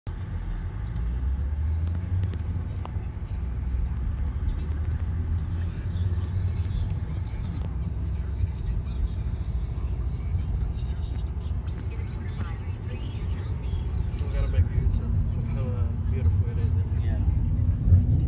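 Road and engine noise heard inside a moving car's cabin: a steady low rumble, with voices in the car in the last few seconds.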